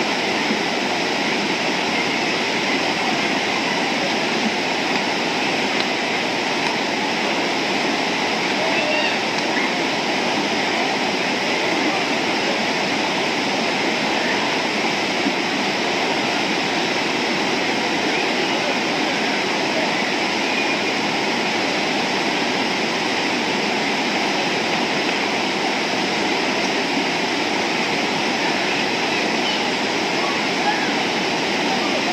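River rapids rushing over rocks close by: a steady, even wash of water noise that does not let up.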